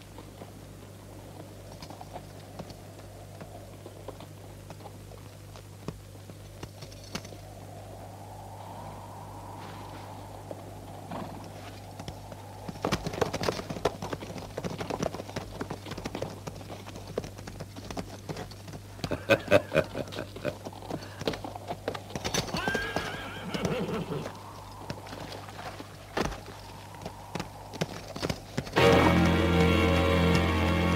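Horses' hooves clopping on a dirt street, with several horse whinnies, starting about midway; before that only a low steady hum.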